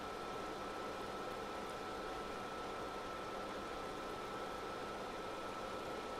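Steady background hiss with a faint, constant high-pitched tone and a low hum underneath; nothing starts or stops.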